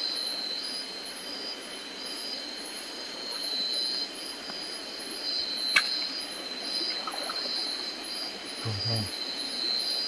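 Night insects chirping: a steady high-pitched trill that pulses evenly about twice a second, with one sharp click about halfway through.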